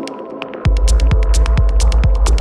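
Hypnotic techno track: fast hi-hat ticks over steady droning synth tones, then about two-thirds of a second in the kick drum and bass drop back in heavily, thumping about twice a second.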